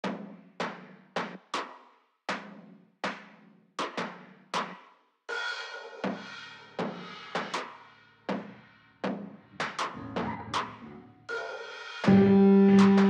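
Drum kit playing the intro of a music track on its own: separate bass drum and snare hits with short pauses between phrases, then cymbals or hi-hat joining with a steady wash about five seconds in.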